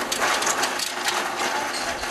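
Continuous dense clattering and rattling, as recyclables are handled in a busy recycling yard.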